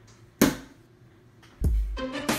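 A plastic water bottle lands on a wooden countertop with a single sharp thud about half a second in, landing upright. Loud background music cuts in about a second and a half in.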